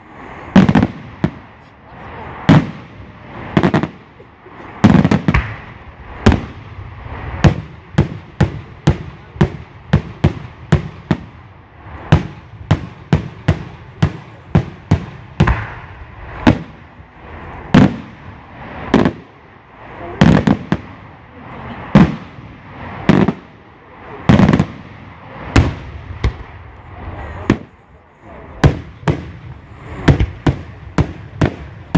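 Aerial salute shells bursting overhead in daylight, a long irregular string of loud, sharp bangs, sometimes two or three a second, packed most tightly in the middle.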